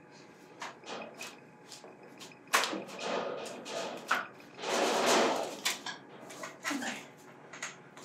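Handling noises of a person climbing carefully down from a raised perch: scattered small knocks and rustles, a sharper knock about two and a half seconds in, and a longer rustle about five seconds in.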